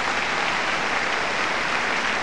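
Audience applauding steadily in response to a figure skater's triple toe, half loop, triple salchow jump sequence.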